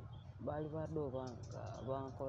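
Speech: a person's voice talking in short phrases, with a brief pause in the middle.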